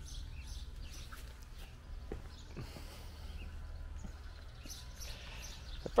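Faint, irregular footsteps and handling knocks from a hand-held camera being carried while walking, over a steady low rumble.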